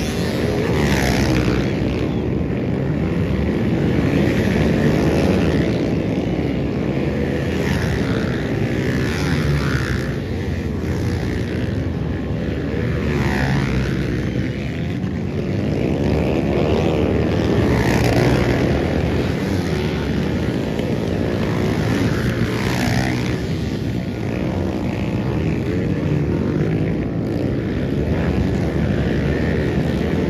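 Dirt bike engines revving hard as the bikes ride by one after another. The engine note keeps rising and falling as each rider accelerates past, over a continuous drone of engines.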